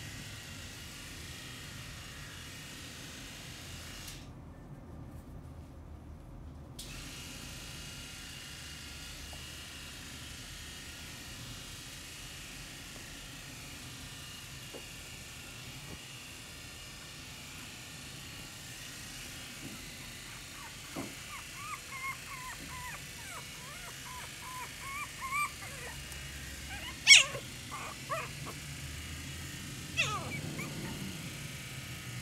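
Poodle puppies whimpering in short, thin, high squeaks that begin about two-thirds of the way through and come more often toward the end, with one loud, sharp yip near the end. Before the squeaks there is only a faint steady hiss.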